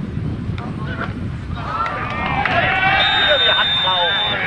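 Footballers shouting over one another in a goalmouth scramble, with a referee's whistle blowing one long steady blast about three seconds in, over a low outdoor rumble.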